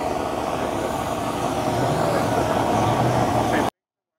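A vehicle engine running steadily with a low hum, over a general outdoor background. The sound cuts off suddenly near the end.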